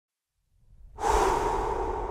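Logo sound effect: a faint low rumble builds from about half a second in. About a second in, a sudden loud noisy rush starts and slowly fades.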